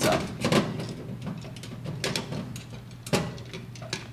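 Scattered light clicks and knocks of small metal parts being handled as a thermostat switch is fastened onto a stud with a wing nut under a fireplace firebox, the sharpest knock about three seconds in. A steady low hum runs underneath.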